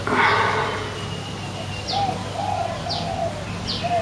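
Birds calling: a dove cooing softly in a low wavering phrase, while another bird gives short, high, falling chirps about once a second. A brief rush of noise at the very start is the loudest moment.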